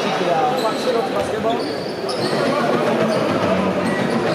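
A basketball being dribbled on a hardwood court amid the chatter of spectators in an indoor arena.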